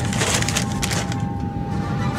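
A brown paper lunch sack rustling and crackling as it is handled, with a run of irregular crisp crackles.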